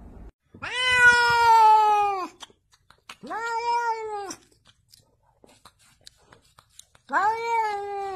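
A domestic cat meowing: three long, drawn-out meows, the first the longest and loudest, the third starting near the end.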